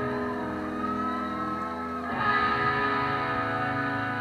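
Electric guitars played live through stage amps, ringing out held chords, with a new chord struck about two seconds in.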